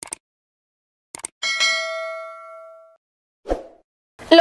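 Subscribe-button animation sound effects: a couple of mouse clicks, two more clicks about a second later, then a bright bell-like notification ding that rings out and fades over about a second and a half. A short burst of noise comes near the end.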